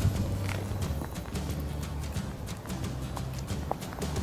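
High-heeled sandals stepping on a gravel path, a run of short crunching footsteps, over background music.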